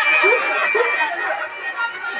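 Indistinct chatter of several voices, a low murmur without clear words, with a thin high tone fading out in the first second.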